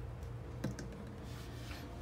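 A few light clicks and taps from a small plastic lotion bottle being handled over a stone counter, the loudest about two-thirds of a second in, over a low steady hum.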